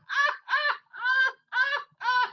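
High-pitched laughter in four hooting bursts, about two a second.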